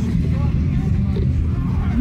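Steady low rumble with people's voices faintly over it.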